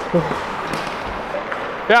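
Ice hockey arena sound: a steady crowd murmur with men's voices calling out on the bench, and a loud shout of "yeah" near the end as a shot is taken.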